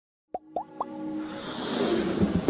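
Animated logo intro sound effects: three quick bloops rising in pitch, about a quarter second apart, then a swelling whoosh with a held low tone building toward the end.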